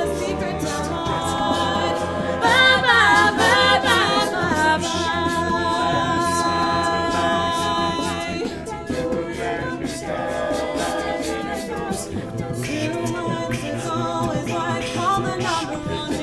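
An a cappella vocal group sings a song in close harmony with no instruments. Sustained chords run throughout, with a louder vocal run gliding up and down about three seconds in and a shorter one near the end.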